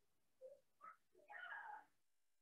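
A cat meowing faintly: two short calls about half a second and one second in, then a longer call near the end.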